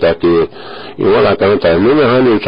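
Only speech: a man talking, with a brief pause about half a second in.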